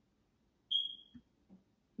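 A single short, high-pitched beep about two-thirds of a second in, fading out within half a second, followed by a couple of faint soft taps.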